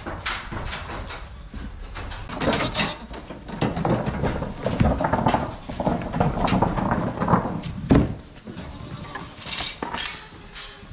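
A herd of young goats clattering on hooves down a concrete passage and into a pen, with metal gates and pen barriers rattling and knocking. The clatter is densest in the middle and ends with a sharp knock about eight seconds in.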